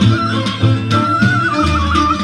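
Bulgarian folk dance music for the buchimish horo: an ornamented, wavering melody line over a pulsing bass.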